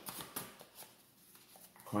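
Soft clicks and rustling of tarot cards being handled, mostly in the first second.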